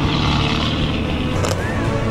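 Mitsubishi Lancer Evolution X rally car driving past on a gravel stage, its engine running hard under steady load.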